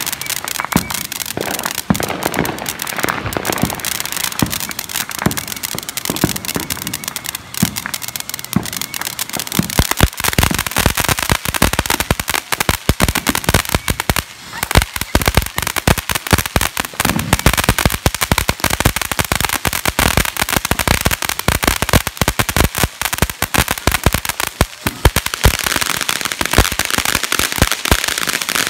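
Ground fountain firework spraying sparks with a dense, unbroken crackling over a steady hiss; the crackle thickens about ten seconds in.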